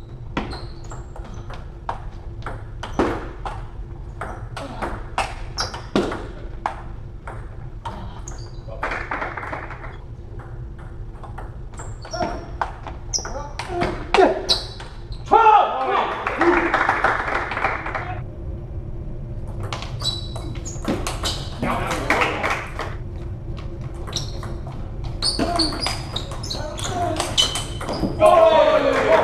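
Table tennis rallies: the ball clicking sharply off bats and table, about two clicks a second in a long run over the first several seconds, with loud voices between rallies, loudest around the middle.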